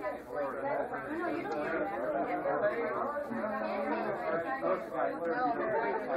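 Overlapping chatter of many people talking at once.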